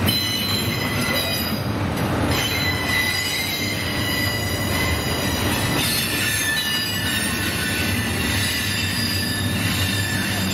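Double-stack intermodal well cars rolling slowly past on steel rail, with a steady rumble of wheels on the track. A high-pitched wheel squeal of several thin, steady tones rings over it.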